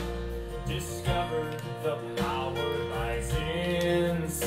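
A recorded country-style song: strummed acoustic guitar with a singer's voice.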